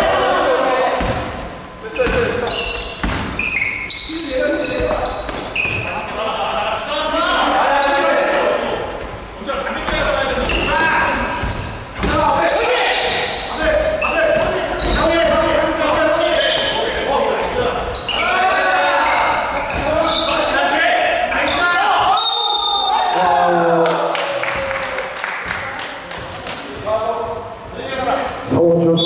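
A basketball bouncing on a hardwood gym floor during play, with players' voices and calls throughout. It echoes in a large indoor hall.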